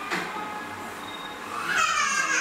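A loud, high-pitched wavering cry starting near the end, over a low background murmur.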